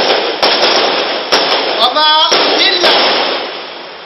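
Loud hiss with sharp crackling clicks about once a second, over brief bits of a man's distorted speaking voice.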